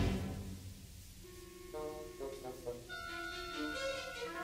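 Live orchestral music from a 1962 mono concert recording: a loud full-orchestra passage breaks off at the start and dies away in the hall's reverberation, then soft held notes come in, stepping slowly from one pitch to the next.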